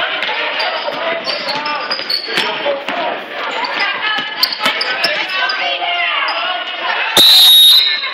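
A basketball being dribbled on a hardwood gym floor, with sharp bounces amid steady crowd and player chatter. Near the end comes a loud referee's whistle blast, about half a second long, stopping play.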